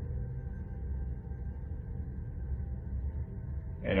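Background music: a low, steady ambient drone with faint sustained tones and no beat.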